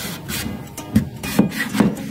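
A knife sawing through the rind of a yellow passion fruit on a plastic cutting board, with scraping strokes and three sharper knocks in the second half.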